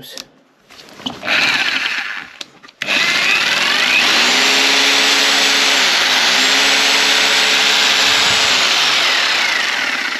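Einhell TC-RH 800 4F 850-watt corded rotary hammer drill running free with no load, spinning hard. A short trigger pull comes about a second in, then a long run at full speed. The speed dips briefly about halfway and recovers, and the motor eases off near the end.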